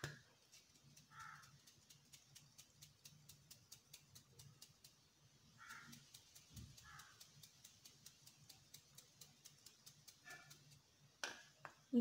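Very quiet, with faint even ticking about five times a second under it, and four short faint bird caws spread through.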